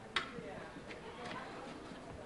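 A sharp click just after the start, then a few light, irregular knocks, with faint voices in the background.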